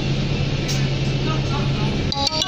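Cabin sound of an Alexander Dennis Enviro 400 double-decker bus on the move: a steady low engine drone over road noise, with a single click about two-thirds of a second in.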